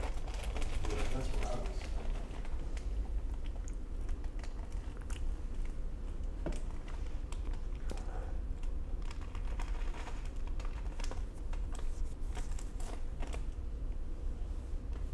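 Faint, irregular small clicks and light handling noise over a low steady hum, with a soft murmur of a voice in the first couple of seconds.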